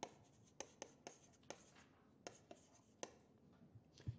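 Yellow chalk on a green chalkboard as characters are written: faint, sharp taps and short scrapes, about ten at irregular intervals.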